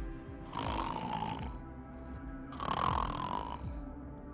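A woman snoring twice through her nose, her mouth taped shut. Each snore lasts about a second, and they come about two seconds apart, over steady background music.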